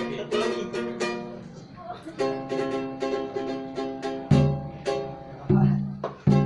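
A ukulele strumming repeated chords at a lively pace. About four seconds in, deep booming drum hits join it.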